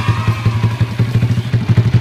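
Honda Astrea's single-cylinder four-stroke engine, rebuilt with a 67.9 mm stroke and a 52.4 mm piston, idling steadily with a fast, even pulse. The engine is freshly rebuilt with a new block and piston and is still being run in, with the valve clearance deliberately set loose.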